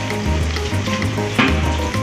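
Soda poured in a stream into a large wok of simmering pork stew, the hot braising liquid sizzling and bubbling. Background music with a steady bass line plays underneath.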